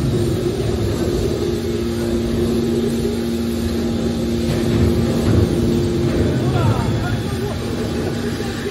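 Hydraulic scrap metal baler running as its hydraulic cylinder swings the top lid down over the press box: a steady two-note hum from the hydraulic power unit over a low rumble, the higher note dropping out about six seconds in.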